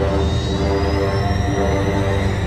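Dark, ominous orchestral soundtrack music: sustained low chords over a deep drone, with a thin high tone gliding slowly upward.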